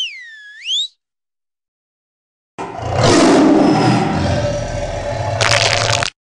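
A short swooping whistle that dips and rises, then after a pause a loud tiger roar lasting about three and a half seconds.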